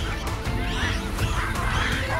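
Background music with many short, harsh, shrill calls over it, most likely baboons screaming and barking as they mob a leopard.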